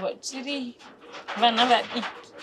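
A woman crying as she talks: two wavering, tearful vocal outbursts, a short one near the start and a louder one in the second half.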